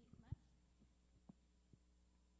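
Handheld microphone handling noise as the mic changes hands: one sharp thump about a third of a second in, then a few faint knocks over a steady low hum from the sound system.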